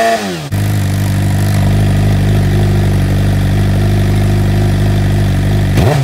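Suzuki GSX-R 600 inline-four engine through an M4 GP slip-on exhaust: a quick throttle blip dies away at the start, then the engine runs at a steady speed for about five seconds, and sharp revving blips start again just before the end.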